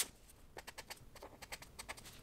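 Pen working on paper: a faint, irregular run of light ticks and taps, several a second.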